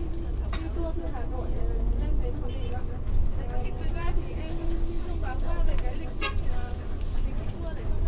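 Steady low rumble of a tour coach running, heard inside the passenger cabin, with voices talking over it.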